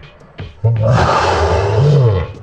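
A long draw through a glass dab rig, a rushing noise that starts about half a second in and runs on, over background music with a steady bass line.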